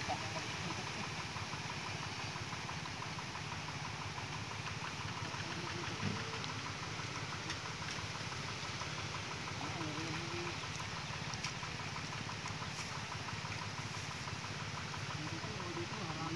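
Irrigation water-pump engine running steadily, a continuous low hum.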